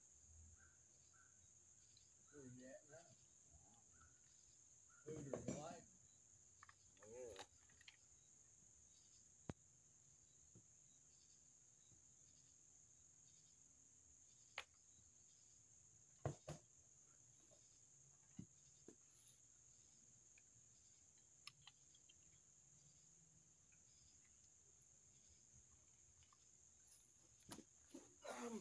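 Faint, steady high-pitched chirring of insects, with a few sharp isolated clicks scattered through the middle.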